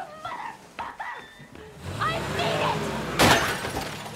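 Sampled film-style sound collage in the intro of a drumfunk track: voice-like fragments and chirping glides, a low swell entering about halfway, then a loud sudden crash a little past three seconds in.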